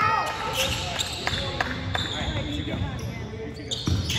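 A basketball bouncing on a hardwood gym floor, a few irregular thuds, amid background voices in a large gymnasium.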